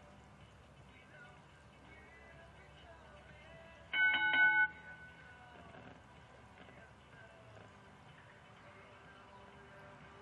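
Show-jumping arena's electric start bell, sounding once for about two-thirds of a second: a ringing tone with a rapid flutter, over faint background voices. It is the signal for the rider to begin, and the 45-second countdown to start the jump-off runs from it.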